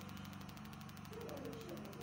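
A faint, steady low hum with room noise in a pause between spoken sentences.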